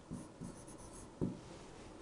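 A marker writing on a board: a few short, faint strokes as a word is finished by hand.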